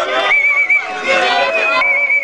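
Crowd voices at a masquerade dance, with a high, fast-warbling cry that rises over them twice.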